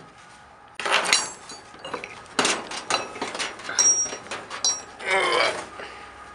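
A padlock clinking and knocking against the steel hasp of a rusty sheet-metal barn door as it is unlocked and worked off, with several sharp clacks, some followed by brief metallic rings. A longer, rougher sound comes about five seconds in.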